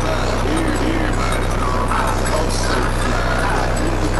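Car audio system with FI BTL subwoofers in a Volkswagen Golf 5 playing bass-heavy music at high volume, the deep bass holding steady throughout, with crowd chatter over it.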